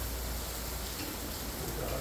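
Steady hiss of outdoor background noise with a low rumble underneath, with no distinct events.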